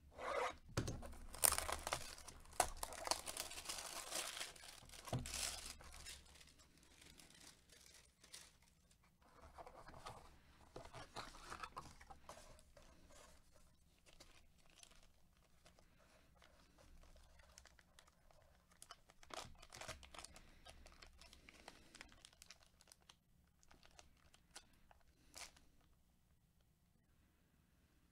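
Plastic shrink-wrap on a trading-card box being slit and torn off, loudest in the first six seconds, followed by quieter crinkling and rustling of packaging as a hard plastic card case is slid out of a black plastic sleeve.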